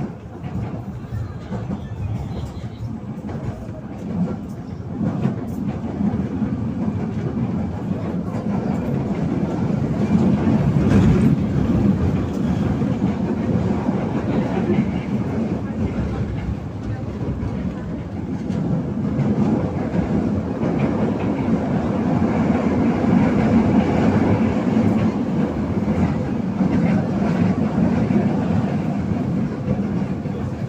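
LRT Line 1 light-rail train running along the track, heard from inside the car: a steady rumble of wheels on rails with scattered clicks, rising and falling in loudness.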